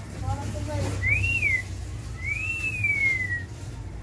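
Someone whistling two notes, each rising and then falling in pitch; the second is longer and slides slowly down, over a steady low hum.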